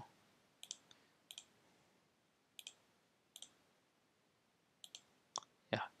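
Faint, sharp computer clicks from the pointer button, about six single or paired clicks spaced irregularly across a few seconds.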